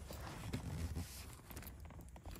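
Quiet, irregular small clicks and scrapes of a flathead screwdriver working against the metal clamp ring on a car's gear-shift lever.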